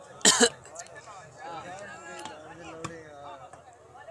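A loud cough close to the microphone, a quick double burst about a third of a second in, followed by the chatter of spectators' voices.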